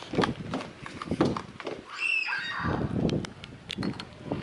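Footsteps on a wooden deck walkway, about three steps a second, with a brief high, falling call about two seconds in.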